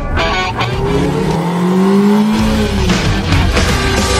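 Intro music with a car engine sound effect laid over it: an engine note holds for a couple of seconds and then drops in pitch about halfway through.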